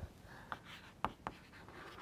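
Chalk on a blackboard while writing: a few short sharp taps, about a second in and just after, with light scratching strokes between them.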